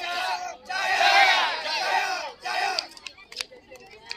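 A squad of men shouting together in unison, a few loud drawn-out calls that stop about three seconds in. A few sharp clicks follow.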